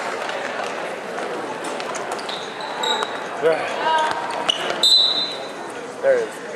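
Basketball game on a hardwood gym floor: a ball bouncing, and several short, high sneaker squeaks, the loudest about five seconds in, over a background of players' and spectators' voices.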